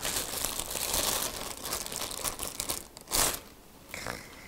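Clear plastic protective bag crinkling as it is pulled off a new camera body, a dense crackle for about three seconds with one louder rustle near the end as it comes free.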